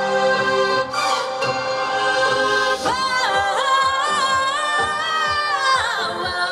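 Female pop singer singing live over a backing track. About three seconds in, her voice slides up to a high note and holds it, then falls away just before the end.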